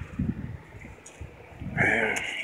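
Soft handling noise and light knocks of starter motor parts being moved and fitted together by hand, faint and brief, with a small tick about a second in.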